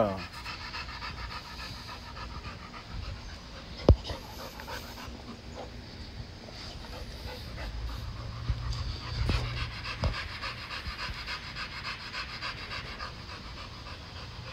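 A dog panting steadily, with one sharp knock about four seconds in.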